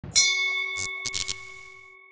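Logo sting: a single bright, bell-like metallic ding struck just after the start, its ringing tones fading slowly over the next two seconds. A few short clicks come around a second in.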